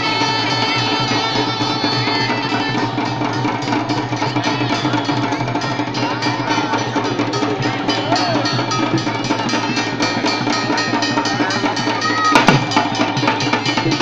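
Traditional Bangladeshi dhol and other hand drums played in a steady driving beat, with a sharp knock near the end.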